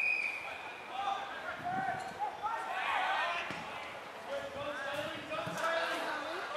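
A short, steady umpire's whistle blast at the very start, then players and spectators shouting and calling over the play, with a few dull thumps.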